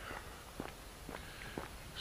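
Faint footsteps of a person walking on a paved lane, about two steps a second.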